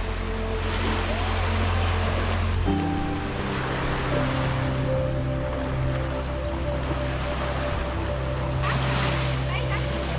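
Small waves washing onto a sandy beach with distant voices of people on the beach. Soft background music with long held chords, which shift a few seconds in, plays over it.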